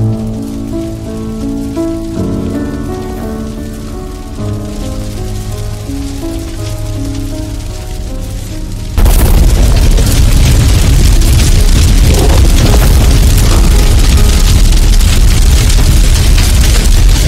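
Background music with sustained notes, then about nine seconds in a sudden, loud, dense crackling roar takes over: a wildfire burning through scrub and trees.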